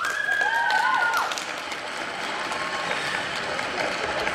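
Audience applauding, with a drawn-out high cheer lasting about a second at the start and a few shorter calls beneath it.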